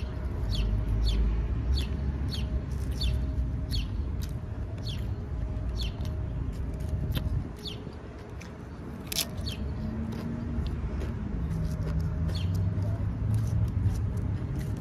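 Close-up chewing of a meatball sub with wet mouth smacks, about two a second, with one sharper smack or crunch about nine seconds in, over a low rumble.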